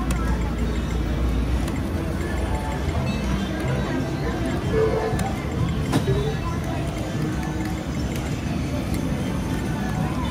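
Casino floor ambience: background music and indistinct chatter over a steady hum, with a sharp click about six seconds in.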